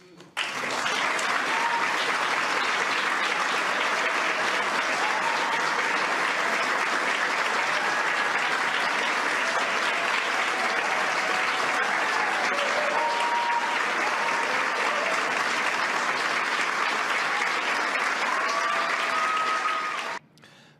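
An audience applauding steadily, starting about half a second in.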